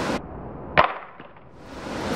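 Samsung Galaxy Note 4 smartphone dropped flat on its front onto concrete: one sharp smack a little under a second in, followed by a few faint clatters as it settles. Wind noise on the microphone cuts off just before the impact.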